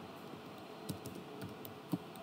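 Computer keyboard typing: a few scattered, faint keystrokes, the loudest one near the end.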